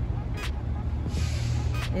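Steady low rumble of an engine running nearby, with a short hiss of air a little past a second in and a couple of faint clicks.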